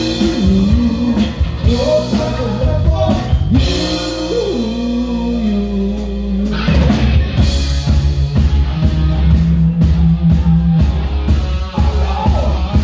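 Live rock band playing loud: electric guitar, bass and drum kit. About six and a half seconds in, the band comes in harder with a steady pounding drumbeat under a held note.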